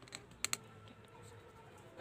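Two sharp light clicks in quick succession about half a second in, with a fainter tick just before, from hard painting things being handled as acrylic paint is mixed and brushed; otherwise quiet room tone.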